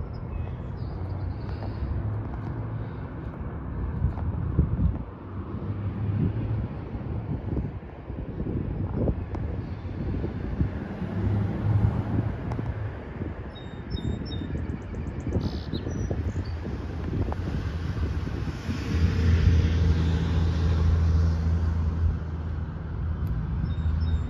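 Wind buffeting the phone microphone outdoors as an uneven low rumble, with a steadier low hum that comes and goes and swells for a few seconds near the end.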